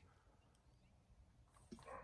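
Near silence: room tone, with a faint brief sound near the end.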